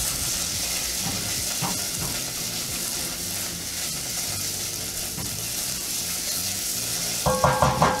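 Diced onions and tomato paste sizzling in a ceramic-coated pot as the paste cooks off. A spatula stirs and scrapes through them in a steady hiss with soft, irregular strokes.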